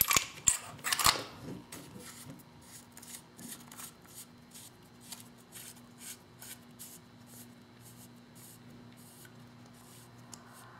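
Hands handling a Dangerous Power G4 paintball marker: a few sharp clicks in the first second or so, then a run of faint clicks and rubbing as fingers work at the back of the body, over a faint steady hum.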